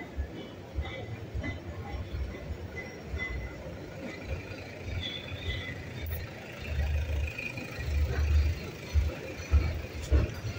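Outdoor street ambience with an irregular low rumble, heavier towards the end, and faint scattered higher sounds.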